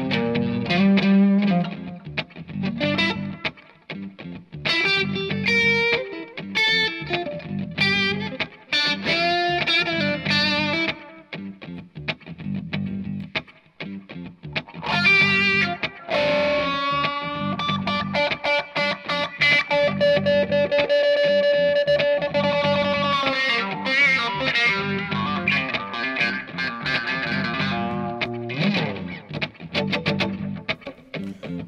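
Electric guitar, a Fender Stratocaster, played with effects on, its signal sent over an Xvive wireless transmitter and receiver into a pedalboard and amp. Phrases of picked notes and chords, with one long held note about halfway through.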